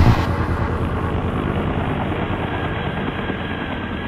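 Outro of a progressive psytrance track: once the beat drops out, an engine-like electronic rumble of noise with a faint steady high tone runs on, slowly fading out.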